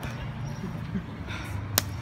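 Street ambience with a steady low traffic hum and faint voices, then a single sharp hand slap near the end.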